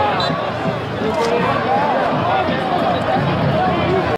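A group of teenage football players shouting and cheering together over a goal: many voices overlapping into a dense babble, with no single voice standing out.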